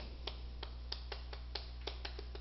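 Chalk tapping on a chalkboard while writing: a string of faint, irregular clicks, about four a second, over a steady low hum.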